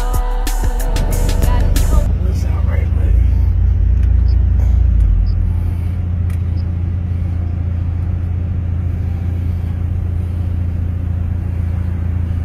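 Two EMF Banhammer 12-inch subwoofers in a car trunk playing loud, deep bass, the very lowest notes held for a few seconds before the bass moves slightly higher about halfway through. It comes in under a short hip-hop intro track that ends about two seconds in.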